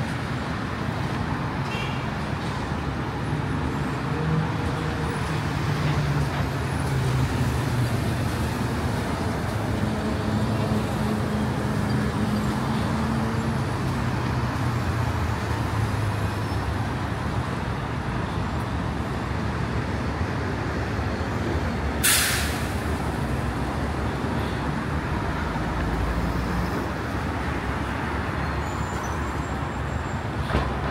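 Steady road traffic heard from above a multi-lane city street: tyre noise with the low engine hum of passing vehicles, swelling for a while partway through. About two-thirds of the way in comes one short, sharp hiss.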